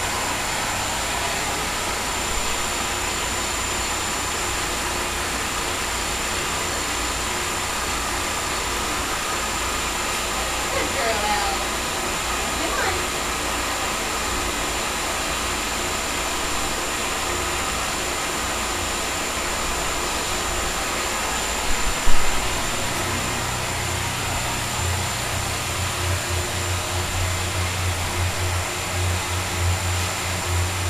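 Underwater treadmill's water jets churning the tank water in a steady rushing noise, with a thin high whine running under it. About 22 seconds in there is one sharp knock, after which a low hum joins the rush.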